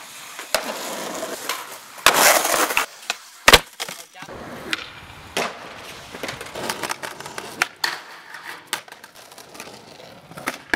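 Skateboard sounds on concrete: wheels rolling and scraping, with a series of sharp clacks as the wooden board is popped, lands and hits the ground. A loud crack about three and a half seconds in is the loudest of them.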